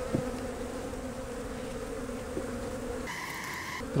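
Honey bees from an open hive buzzing in a steady hum, with a brief higher buzz near the end.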